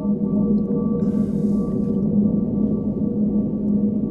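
Low, eerie ambient music drone: several sustained tones held steadily, the lowest slowly swelling and fading, with a faint brief hiss about a second in.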